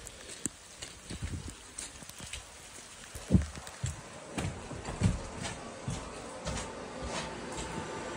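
Footsteps and camera-handling rustle as someone walks from grass into a small room, uneven thuds about a second apart with one heavier step about halfway through. A faint steady hum from the room's equipment joins in the second half.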